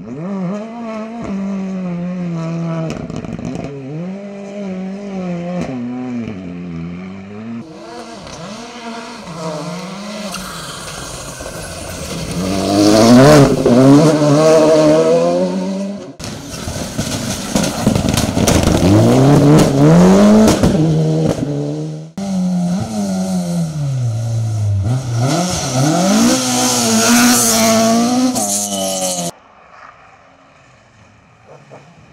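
Rally car engines revving hard, their pitch climbing and dropping again and again through gear changes and lifts, in several separate passes that cut off abruptly from one to the next. The loudest stretch comes in the middle.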